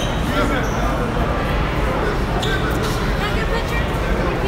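Background chatter of many people talking at once in a crowded concrete corridor, with a few short knocks mixed in.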